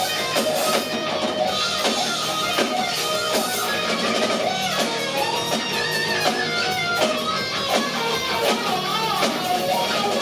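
A live blues-rock band playing an instrumental passage: a distorted Stratocaster-style electric guitar plays a lead line full of string bends through Marshall amps, over bass and drums.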